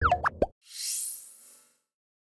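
Animated end-card sound effect: a quick run of bubbly popping glides in the first half second, followed by a bright, shimmering swish that fades out.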